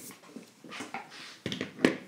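Handling noises of tools and a tin on a workbench: soft rustling, then two short knocks near the end, the second the louder.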